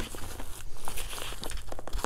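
Nylon first aid pouch being handled and tugged at its pull tabs: irregular fabric rustling with many small crackly clicks.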